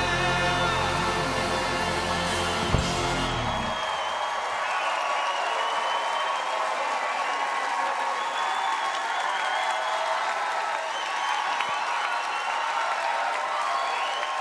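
A live pop-rock band holds its final chord, closing with a last sharp hit about three seconds in. The music stops about a second later, and the audience applauds and cheers for the rest.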